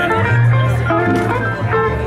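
Band music led by guitar, with changing notes over a steady bass line.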